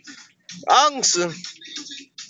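Speech: a person talking with a swooping, rising and falling pitch, inside a car.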